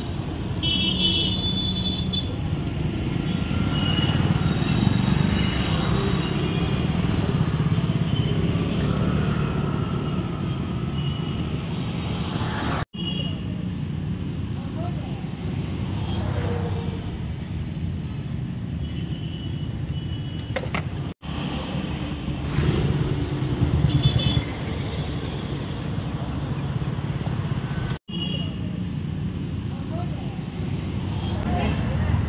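Street ambience: steady traffic noise from passing vehicles, with faint voices and the odd horn toot, cut to silence for an instant three times.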